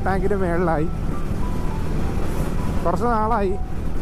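A song with a singing voice, a phrase near the start and another about three seconds in, sung with a wavering vibrato, over a steady low rumble of a motorcycle riding at highway speed.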